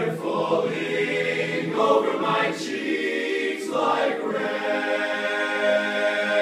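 Men's barbershop chorus singing a cappella in close four-part harmony, holding steady, ringing chords.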